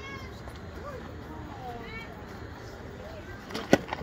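Scattered distant calls from players and spectators over a low murmur, then near the end a sharp crack of a baseball bat hitting the pitched ball.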